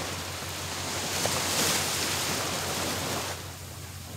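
Small sea waves breaking and washing up a sandy shore. The wash swells to its loudest about a second and a half in, then falls away a little after three seconds.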